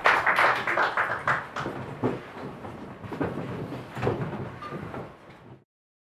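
Audience applause thinning out to scattered claps and growing quieter, then cut off abruptly near the end.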